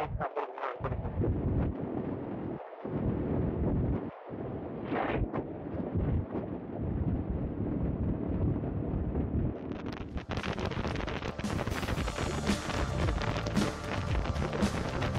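Wind rushing over a motorcycle rider's impaired microphone while riding: a dull, muffled rush that cuts out briefly a few times. About ten seconds in, it changes abruptly to a brighter, fuller rush of wind and road noise.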